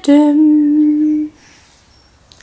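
A woman's voice humming one long, steady note, sung playfully, that stops about a second and a half in.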